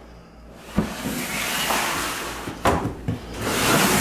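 Plastic snake tub sliding in a tub rack: a sharp click about a second in, a scraping slide, two knocks near the three-second mark, then another scraping slide.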